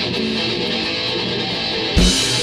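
Live rock band playing an instrumental passage: strummed electric guitars over bass and drums, with a sudden loud hit at the very end.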